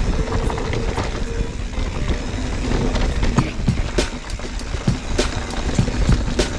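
Mountain bike rolling fast over a rocky trail: tyres on loose stone and repeated irregular knocks and rattles from the bike as it hits rocks, over a low rumble of wind on the camera.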